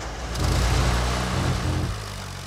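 Pioneer 251 half-track's engine running as the vehicle pulls away, its low note growing louder about half a second in.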